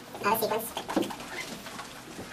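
Dry-erase marker squeaking in short strokes across a whiteboard as words are written.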